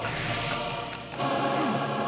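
Music cue of a choir singing a sustained chord, moving to a new chord about a second in.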